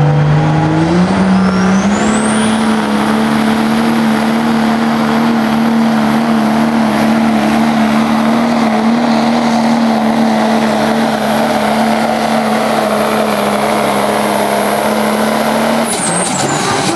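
Dodge Ram pickup's turbo-diesel engine at full throttle under load, pulling a weight sled. Its pitch climbs over the first two seconds and then holds steady at high revs, with a high turbo whistle rising alongside and then holding.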